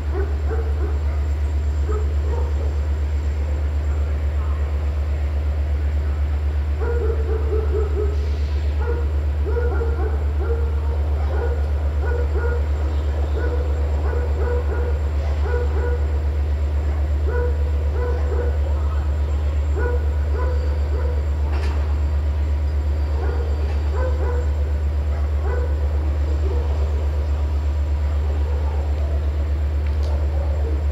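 Diesel locomotive engine idling with a steady low drone. Over it, from about seven seconds in, a dog barks over and over in short runs.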